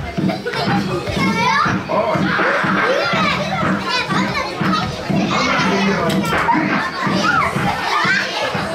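A large crowd of children chattering and calling out all at once in a big hall, with a few high squealing voices rising above the din.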